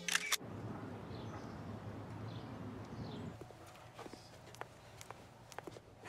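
A short sharp clatter at the start, then a low steady outdoor hum with a few faint high chirps. About three seconds in this gives way to quieter room tone with scattered light taps.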